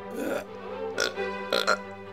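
A woman burping, a few short burps over steady orchestral music.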